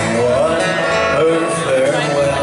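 Live folk trio playing an instrumental passage through the stage PA: acoustic guitars strumming over a bass guitar, with a melody line that slides between notes.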